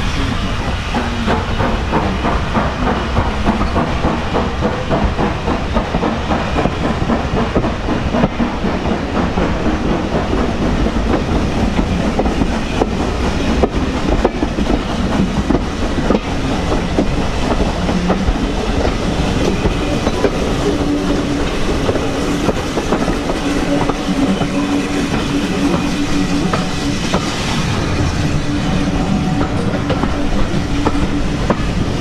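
Steam-hauled railway carriage running along the line behind an Austerity 0-6-0 saddle tank: steady rumble with the clickety-clack of wheels over rail joints. A steady low tone joins in about two-thirds of the way through.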